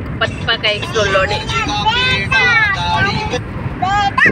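People's voices inside a moving car over a steady low rumble of road noise; the voices stop near the end.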